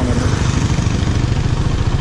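Honda Tiger Revo's single-cylinder four-stroke engine running at low, steady revs as the motorcycle rides along, its firing pulses even throughout.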